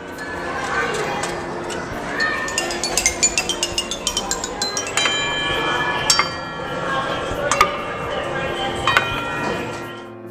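A musical ball-run sculpture: a ball tapping down wooden xylophone bars in a quick run of notes, then several sharp strikes on metal bowl bells that ring on. Voices and room noise run underneath.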